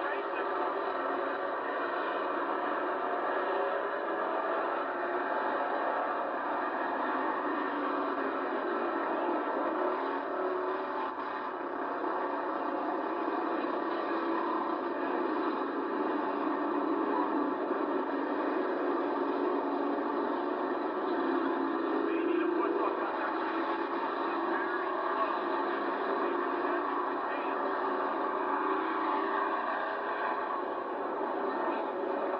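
A pack of pure stock race cars running laps on a dirt oval: a steady, blended engine drone that swells slightly and eases as the cars come round, with no deep bass.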